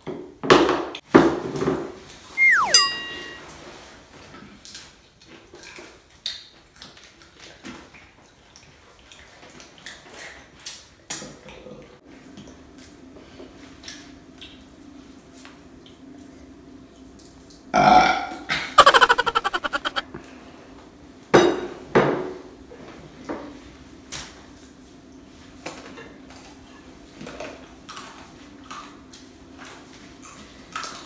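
Table eating sounds from a fried-chicken meal: clicks and crackles of chicken being pulled apart and eaten, with plastic spoons and containers tapping. About 18 seconds in comes the loudest sound, a burp-like sputter lasting about two seconds, just after a plastic bottle of banana sauce is squeezed onto a plate.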